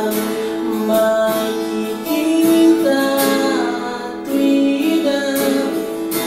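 A man singing while strumming an acoustic guitar, the voice's pitch moving from note to note over repeated strummed chords.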